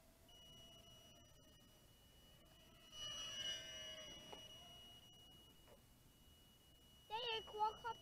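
A brushed-motor micro quadcopter's onboard buzzer sounds a faint, steady high tone: its low-battery-voltage alarm. Over it the quad's motors give a high whine, louder for about a second and a half from about three seconds in as it flies nearer.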